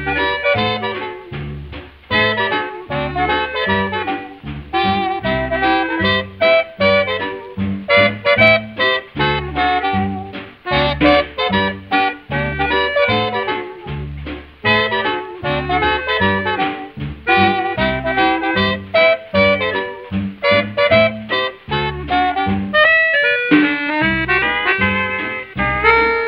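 Instrumental break of a 1946 swing-styled country recording by a band billed as an orchestra, played from a Decca 78 rpm record, with no vocal. Wind instruments play over a steady bass beat, and the sound is dull, with no high treble.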